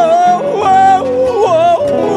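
A man singing long, wordless held notes in the décima style, broken by quick dips and slides in pitch, over guitar accompaniment.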